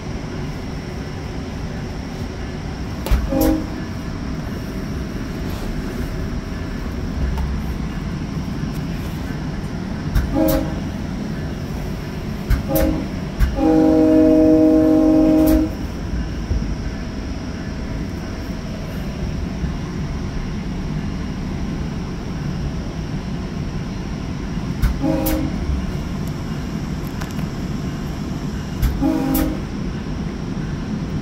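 Sounder commuter train heard from inside a Bombardier bilevel cab car: a steady rolling rumble, with the train horn sounding in short blasts about 3, 10 and 13 seconds in, one longer blast of nearly two seconds just after, and two more short blasts in the last third.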